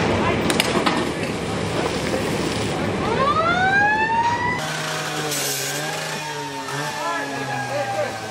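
Fire engine siren winding up: a rising wail starts about three seconds in, levels off, then slowly falls in pitch, over a steady rumble of noise at the start.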